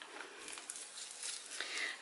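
Faint, scattered light clicks and rustles of a gloved hand picking up and handling a small plastic cup of paint.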